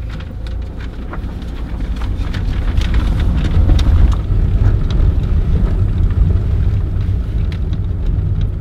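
Car driving on a rough dirt track, heard from inside the cabin: a heavy low rumble that builds over the first few seconds, with frequent small knocks and rattles.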